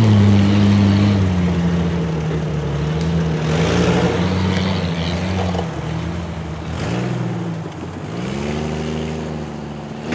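Jeep Cherokee engines revving up and easing off as they climb a dirt trail, the pitch rising and falling several times.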